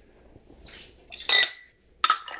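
A jar of coconut oil being handled: a faint soft scrape, then one short clink with a brief ring about one and a half seconds in.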